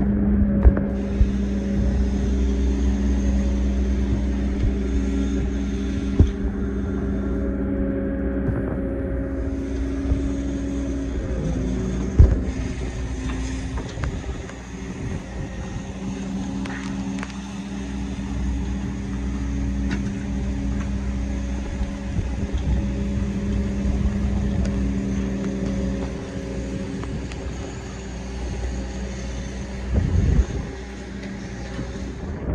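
Cat excavator running steadily, its engine and hydraulics working as it pulls a driving rod out of the ground by chain, with a steady hum of several tones that drops out briefly a few times. A sharp metallic knock comes about twelve seconds in.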